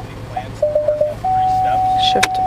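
2015 Ford Edge's parking-sensor chimes while reversing. Spaced single beeps quicken into a rapid run of four, then become one continuous tone a little past halfway, signalling that the obstacle behind is very close and the car should stop.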